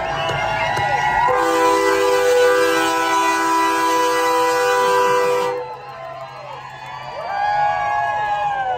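Semi truck's air horn sounding one steady multi-note chord for about four seconds, starting about a second in, over a cheering, whooping crowd.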